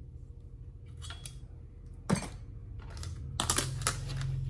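Plastic food tubs being handled: soft clicks about a second in, one sharp clack just after two seconds, and a cluster of rattling knocks near the end, over a low steady hum.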